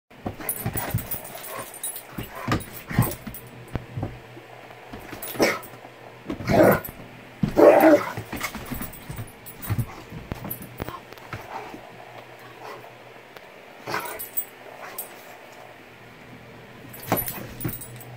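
A dog vocalizing playfully in short yips, whines and barks, in scattered bursts, the loudest about seven to eight seconds in.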